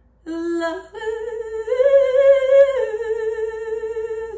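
A woman singing unaccompanied, holding a long wordless note with vibrato after a short lower one; the pitch steps up about a second and a half in and drops back near the end.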